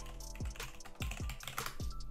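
Typing on a computer keyboard: a quick, uneven run of key clicks, with soft background music underneath.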